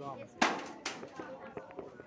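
Two sharp knocks over people talking: a loud one about half a second in, with a short ring-out, and a fainter one about half a second later.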